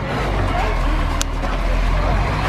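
A vehicle engine running with a steady low rumble, with a single sharp click about halfway through.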